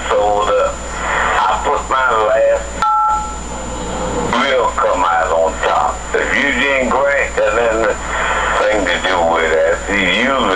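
A caller's voice talking over a telephone line on a call-in broadcast, hard to make out. About three seconds in, one short telephone keypad tone sounds: two steady pitches together, lasting well under a second. A faint steady high whine runs underneath.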